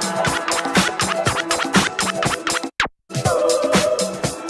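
Vinyl scratching on a DJ turntable over dance music: quick back-and-forth record strokes, each a short sweep in pitch. About three quarters of the way through, a falling sweep ends in a brief cut to silence before the music comes back.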